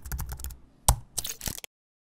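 A quick run of sharp clicks and taps, loudest about a second in. The sound cuts off abruptly to silence near the end.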